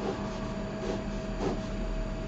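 Pen drawing on paper: faint scratching strokes over a steady background hiss with a faint steady hum.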